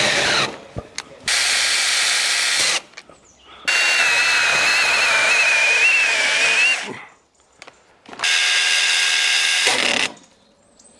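Battery-powered mini chainsaws forced one after another into a log under heavy load to test their torque, each a short burst of high-pitched motor whine with the chain tearing through wood. One saw winds down with a falling whine at the start, then three separate cuts follow. The middle cut is the longest, its pitch wavering as the chain bogs under the push.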